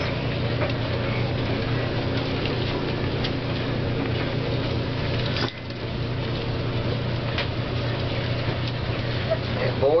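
Steady low hum with an even background hiss, broken by a few faint ticks and scuffs from puppies wrestling on a cloth pad; the level dips briefly about five and a half seconds in.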